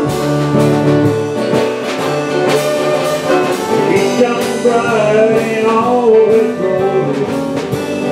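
Live country gospel band playing an instrumental passage: a fiddle melody over strummed acoustic guitars and a steady drum beat with cymbals.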